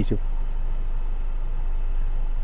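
Steady low hum inside a parked car's cabin, the vehicle idling, after a single spoken word at the start.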